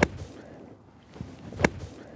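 Open-faced sand wedge thumped hard into bunker sand behind the ball on a full-speed splash shot: one sharp impact right at the start. A second short, sharp click follows about a second and a half later.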